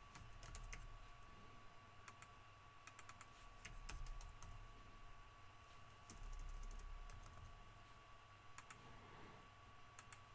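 Faint computer keyboard typing and mouse clicks: scattered keystrokes in small clusters over a low, steady electrical hum.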